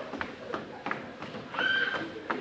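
Footsteps tapping on a wooden stage floor, about three a second. Near the end comes a short, steady, high-pitched tone.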